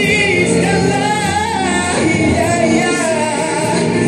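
A man singing a Malay song into a microphone over musical accompaniment, holding long notes with a wavering vibrato.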